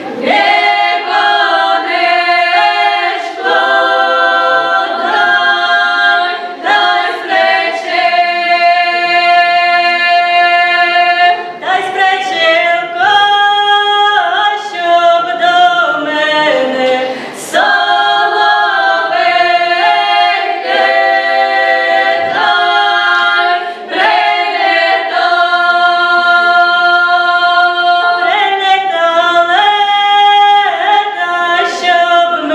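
Five-voice female folk ensemble singing a cappella in traditional Ukrainian group style. The voices move in phrases of long held chords, with short breaks between them.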